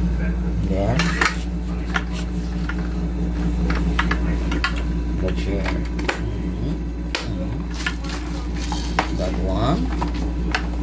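Scattered plastic clicks and light knocks as a baby rocker's plastic frame and fabric seat cover are handled and fitted together, over a steady low hum.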